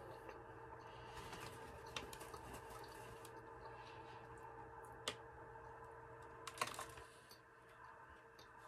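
Very quiet room tone with a steady faint hum, broken by a few soft clicks about two, five and six and a half seconds in, from chewing and handling a soft cookie.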